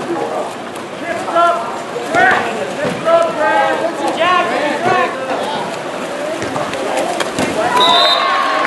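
Several people shouting and calling out in raised, high-pitched voices over a steady background of crowd noise.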